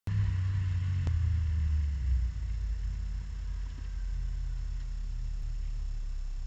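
Race car engine heard from inside the cockpit, running at a light throttle around 2,900 rpm as the car rolls slowly, then dropping to a steady idle near 1,000 rpm as it comes to a stop, about two seconds in. A single sharp click about a second in.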